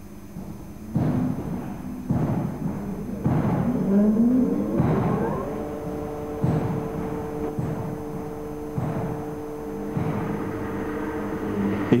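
Electric motor of the hydraulic oil pump starting: a rising whine as it runs up to speed, which settles into a steady hum. A dull thump recurs about once a second throughout.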